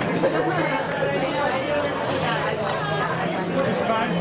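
Overlapping chatter of many people talking at once, with no single voice standing out.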